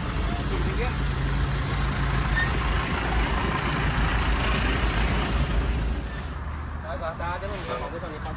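Road vehicles running close by: steady engine rumble and road noise as cars and a small flatbed truck move along together, dropping away about six seconds in as they come to a stop, after which voices are heard.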